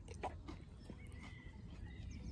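Faint outdoor ambience, a low steady background with a few soft clicks in the first half and a thin high tone near the middle.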